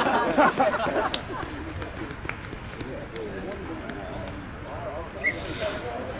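Indistinct shouting and talking from rugby players and onlookers, loudest in the first second, then quieter scattered calls.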